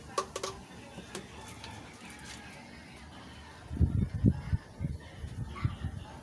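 Plastic containers handled on a table: a few light clicks just after the start, then a cluster of dull low thumps about four seconds in and a few more near the end as a container is set down.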